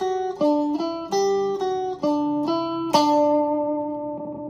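Stratocaster-style electric guitar playing a short single-note solo phrase: about seven picked notes in quick succession, the last one held and left ringing about three seconds in.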